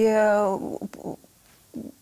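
A woman's voice holding a drawn-out hesitation sound for about half a second, a few short broken-off sounds, then a pause of nearly a second in a small studio room.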